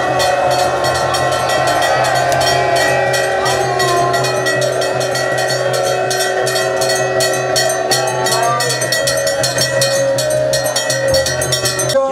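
Temple bells and cymbals struck rapidly and without pause for the camphor-flame aarti, about five or six metallic strikes a second over a sustained ringing. A crowd's voices are mixed in.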